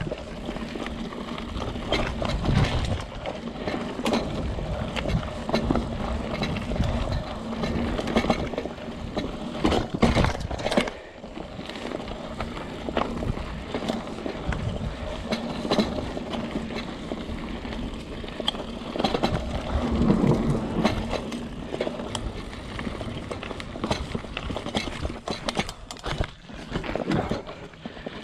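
Mountain bike ridden fast over a dirt singletrack: a continuous rumble of tyres on dirt, with the bike rattling and many sharp knocks as it goes over bumps and roots.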